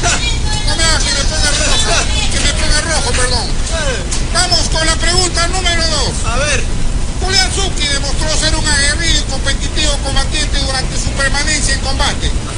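People talking in a TV studio, over a steady low rumble.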